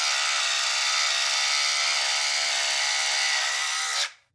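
Cordless split-end hair trimmer's small electric motor running with a steady whine as a strand of hair is fed through it, switching off at the very end.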